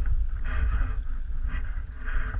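Choppy lake water slapping against the side of a small boat in irregular splashy bursts, over a steady low rumble of wind buffeting the microphone.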